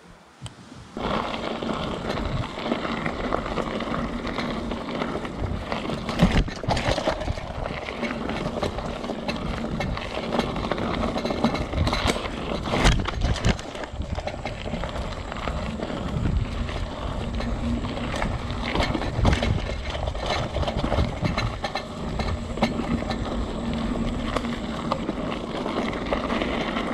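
Mountain bike being ridden over a dirt and gravel trail, heard from a camera mounted on the rider: continuous rumble and rattle of tyres and frame over the ground, with sharp knocks from bumps now and then. It starts about a second in, after a quiet moment.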